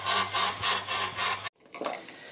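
Electric stirrer motor of a lab batch reactor running, with a steady hum and a rhythmic rubbing pulse about four times a second; it cuts off abruptly about a second and a half in.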